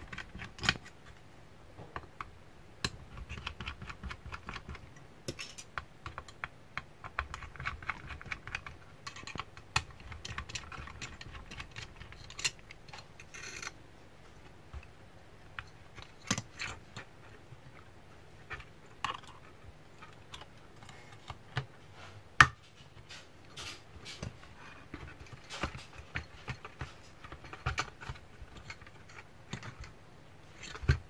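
Irregular light clicks and taps of hands handling the plastic housing, antenna boards and aluminium-heatsinked circuit board of a ZTE 5G router as it is taken apart, with one sharper knock about two thirds of the way through.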